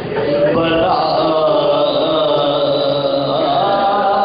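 Male voice chanting a marsiya in soazkhwani style, unaccompanied, drawing out long held notes from about half a second in.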